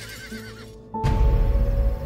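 A horse whinnying, its wavering cry fading in the first second, then a sudden loud, deep swell of film-score music about a second in.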